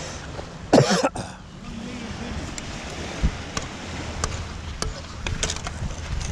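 A man coughs once, sharply, just under a second in. A few light clicks follow at irregular intervals over a steady noisy background.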